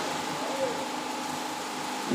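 Steady background hiss with a faint, constant hum, and a very faint brief voice-like glide about half a second in.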